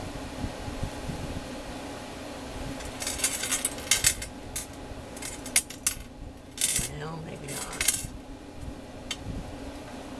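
Twine being drawn and wrapped around a paper-covered needle book while the book is handled on a cutting mat: scratchy rubbing and rustling in several bursts from about three seconds in, with a few sharp clicks.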